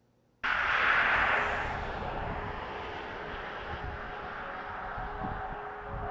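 A steady rushing outdoor noise that cuts in abruptly, loudest in its first second and then settling to an even level, with a faint steady hum beneath it.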